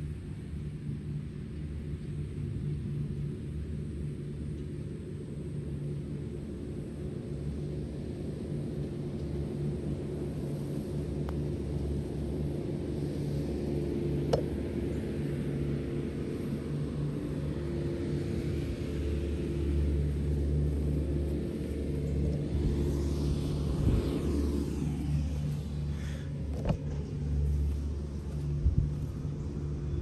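A motor engine running steadily nearby, heard as a low hum throughout. A broader rushing noise swells and fades about two-thirds of the way in. There is one sharp knock about halfway through and a few clicks near the end.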